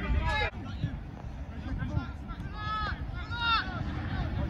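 Distant shouts from footballers on the pitch, a short call near the start and a longer couple of calls later, over low wind rumble on the microphone.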